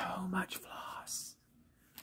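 A woman's breathy, whispered exclamation with a brief low hum in the first half second, trailing off about a second and a half in.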